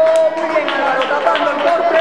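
A person's voice, with some long held pitches.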